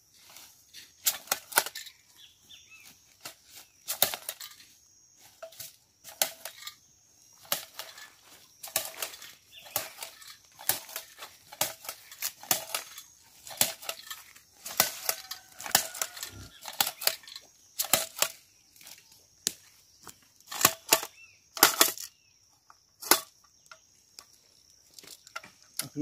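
Hand jab planter (matraca) stabbed into the soil and snapped open again and again, a sharp clack with a rustle of dry leaves at each stroke, about one every second or so. Insects keep up a steady high buzz behind it.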